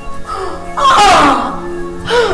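A woman wailing in distress, with one loud wavering cry that falls in pitch about a second in, over background music with held notes.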